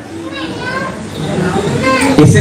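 Children's voices in the background during a short lull in a man's speech through a microphone; the man's voice picks up again near the end.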